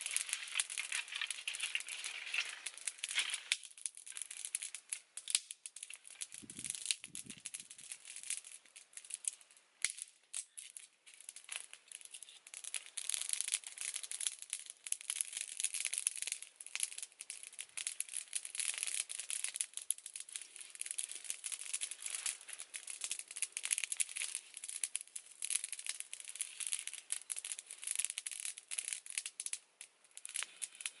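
Dry sticks and dead leaves rustling and crackling as they are handled beside a small wood fire: a dense, uneven patter of small clicks, with two soft low thumps about seven seconds in.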